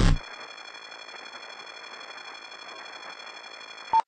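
A loud music sting cuts off right at the start, leaving a faint steady hiss with several thin, high-pitched whining tones underneath. A short blip comes near the end.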